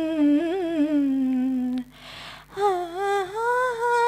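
A young woman humming a wordless melody into a microphone, unaccompanied. A long held note wavers and slides slowly down, breaks off just under two seconds in for a breath, and the tune picks up again.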